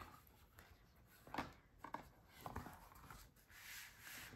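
Near silence, with a few faint, brief rustles and soft knocks of a folded paper-and-cardstock journal being handled and opened out on a wooden table.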